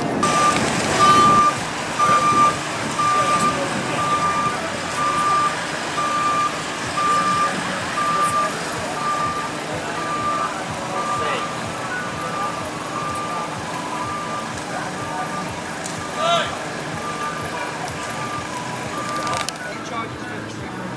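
A vehicle's reversing alarm beeping steadily, one single-pitched beep about every second.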